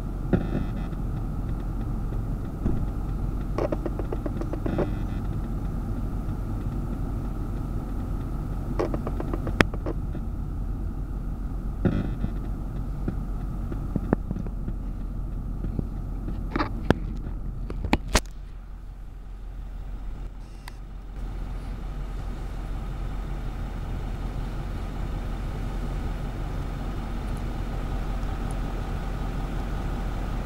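Steady engine rumble from construction machinery, broken by a few sharp clanks or knocks spread over the middle stretch.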